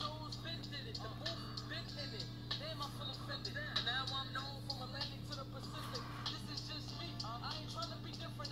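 Faint song with a singer's voice and a ticking beat, leaking from Beats Solo3 on-ear wireless headphones played at full volume, over a steady low hum.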